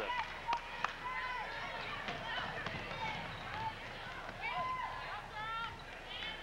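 Basketball shoes squeaking in short chirps on a hardwood gym floor as players run the court, over the voices of the crowd in the stands. Two sharp knocks come in the first second.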